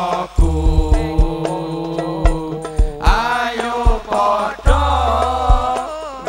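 Islamic sholawat song performed live: a group of male voices singing together over regular drum beats and a deep sustained bass tone that swells twice.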